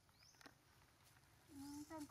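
Near silence with faint outdoor background, a soft rising high chirp just after the start and a few faint clicks; a voice-like pitched sound starts about one and a half seconds in.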